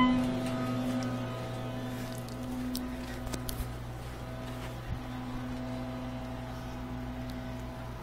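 Otis hydraulic elevator running: a steady low hum that swells and fades slightly, with a brief high tone right at the start.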